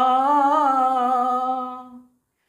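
A man singing a line of Odia verse, holding one long note on its last syllable with a slight waver, fading out at the end.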